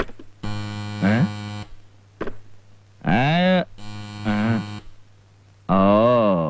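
Garbled, buzzing voice from a telephone handset's earpiece. Two stretches of steady buzz alternate with wavering, voice-like sounds, like a caller speaking unintelligibly down the line.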